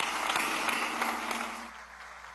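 An assembly hall full of people applauding. It starts suddenly and fades away about a second and a half in.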